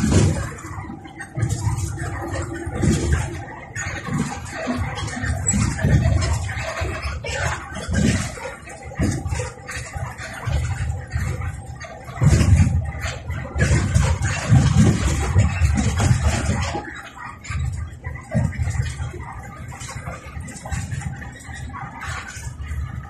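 Noise inside a moving bus's cabin: running drive and road noise broken by irregular low knocks and rattles as it travels.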